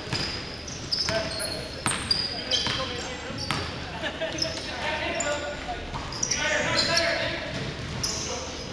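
Indoor basketball play on a hardwood court: sharp bounces of the ball about once a second, short high squeaks of sneakers on the floor, and players' shouts, loudest near the end.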